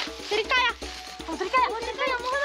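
A child's short spoken lines over soft background music.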